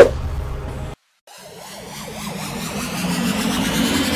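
Intro sound design: a sharp hit, then about a second in the sound cuts out briefly. After that a build-up swells, rising steadily in pitch and loudness, with a low climbing rumble and a high rising whine.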